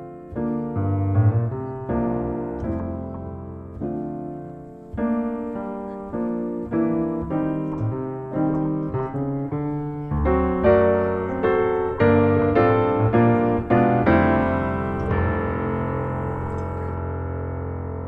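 Background piano music: a melody of separate struck notes that ends on a held chord, which dies away near the end.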